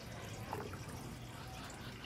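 Faint water sloshing and dripping as a hand moves slowly underwater in a plastic tub.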